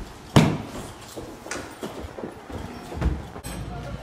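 Footsteps of people walking down a hallway, with one loud bang about a third of a second in and scattered knocks after it. A low steady hum comes in near the end.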